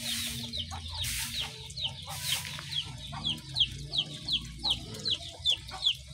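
A bird peeping: a run of short, high, falling notes at about three a second, with a few brief bursts of hiss in the first half.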